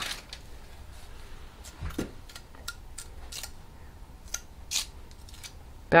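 Scattered light clicks and taps of stained-glass pieces and small hand tools being handled on a work table, with a heavier knock about two seconds in.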